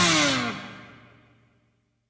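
A blues-rock band's last chord ringing out, with notes sliding down in pitch in the first half second, then dying away within about a second.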